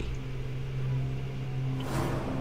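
A low, steady drone from a horror trailer's sound design, held on a couple of deep tones, swelling into a short rising whoosh near the end as it cuts to a title card.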